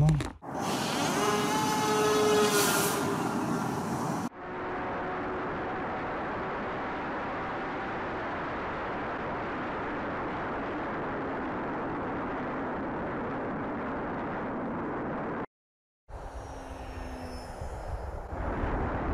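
Steady rush of air and electric motor drone picked up by the onboard camera of a twin-motor AtomRC Swordfish FPV plane in fast, low flight. It opens with a few seconds of a louder sound with rising tones, and the steady noise cuts out suddenly about fifteen seconds in before a fainter low hum resumes.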